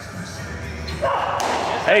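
A pitched fastball hitting the catcher's leather mitt with one sharp pop about one and a half seconds in, just after a short rise of noise.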